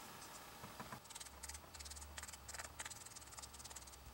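Faint, rapid scratchy dabbing of a small piece of sponge working ink onto the edges of a die-cut paper oval, starting about a second in.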